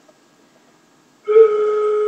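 Flute head joint, open end stopped by the hand, blown across the embouchure hole by a beginner: after a pause, one steady tone starts about two-thirds of the way in and holds. It is her first tone on the flute.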